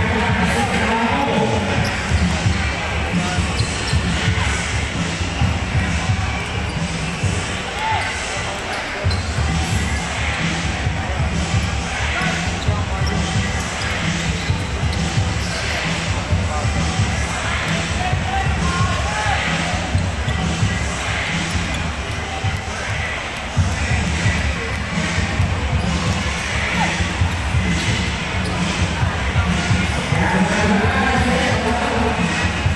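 Live basketball game in a large indoor arena: the ball being dribbled and bouncing on the court, with voices from players and spectators and a steady low rumble of the hall.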